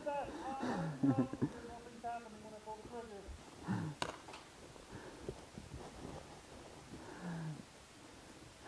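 Faint voices talking and calling out, with a single sharp click about four seconds in.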